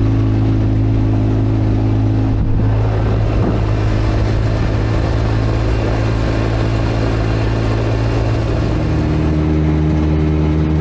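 Side-by-side UTV engine running steadily while the machine drives over gravel, with road and tyre noise building after a few seconds. The engine note changes near the end.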